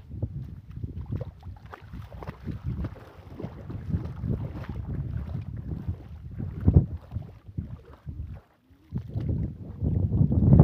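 Wind buffeting the microphone in uneven gusts, a low rushing noise that cuts out briefly near the end.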